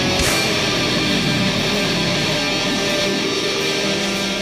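Heavy metal music: distorted electric guitar chords ringing out, with a single drum and cymbal hit just after the start.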